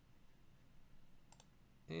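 A single computer mouse click, heard as a quick pair of ticks, about a second and a half in, selecting a tab on a web page. Otherwise a quiet room.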